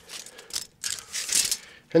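A steel tape measure's blade being drawn out of its case in several short pulls.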